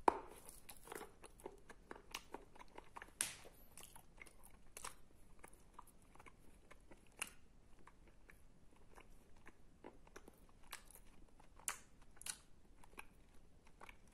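Close-miked biting and chewing of lumps of wet edible clay paste, Tavrida clay mixed with sandy clay: a string of short clicks and smacks, the loudest at the first bite right at the start, with a few sharper ones later.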